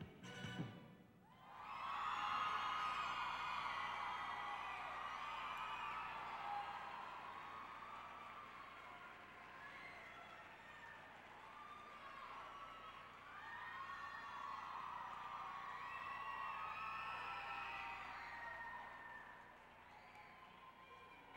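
The skating program's music cuts out about a second in, then an audience applauds and cheers with whoops over the clapping, fading near the end.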